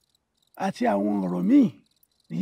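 A person's voice holding a steady pitched note, with a brief rise and fall in pitch near the end.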